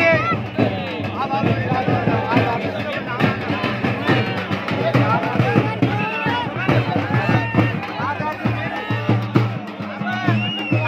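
Large frame drums beaten with sticks in a fast, steady rhythm, with many voices shouting and talking over them.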